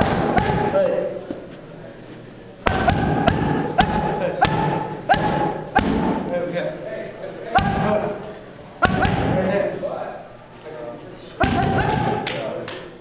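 Boxing gloves striking a trainer's focus mitts in short combinations, about a dozen sharp smacks in groups of one to three, with a voice between the strikes.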